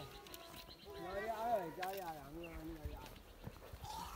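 A single drawn-out, wavering call, about two seconds long, starting about a second in, with a brief click partway through.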